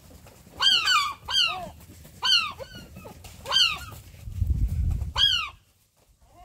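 Herring gulls calling: about six short calls, each sliding down in pitch, two close together near the start and the rest spaced about a second apart. A low rumble joins in over the last second and a half.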